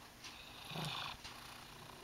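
A big white domestic cat snoring faintly in its sleep: one soft snoring breath lasting just under a second, starting about a quarter of a second in.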